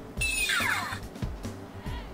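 Electronic sound effect from the KillerBody Iron Man Mark 5 helmet's speaker answering the command to leave battle mode: a short falling sweep in the first second. Background music runs underneath.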